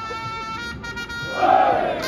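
Japanese baseball cheering-section trumpets playing a player's cheer song, holding a long note and then moving on, with the massed fans shouting a chant together about one and a half seconds in.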